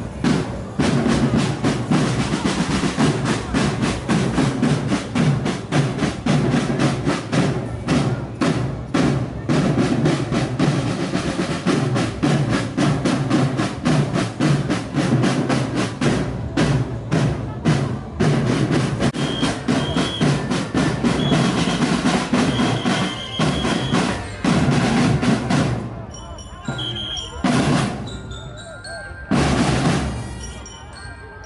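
An army marching drum corps playing snare drums in a fast, dense cadence with drum rolls. Near the end the drumming thins out and gets quieter.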